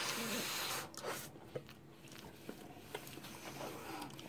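A breathy, snorting laugh through the nose for about the first second, then quiet with a few faint clicks.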